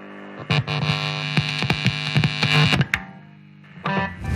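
Electronic logo sting: a distorted synthesizer hum with rapid glitchy clicks that cuts off at about three seconds, followed by a sharp hit just before the end.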